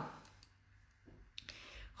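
A woman's sung note trailing off at the very start, then near silence with a few faint clicks a little past halfway.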